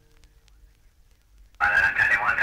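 The last sustained tones of the recording fade out into near silence. About a second and a half in, a loud, tinny, narrow-band sound like an old radio or archival recording cuts in suddenly.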